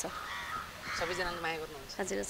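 A bird calling twice, with a woman's short voiced sound about a second in, between the calls.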